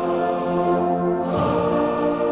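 Men's choir singing held chords with a brass band (fanfare) accompanying.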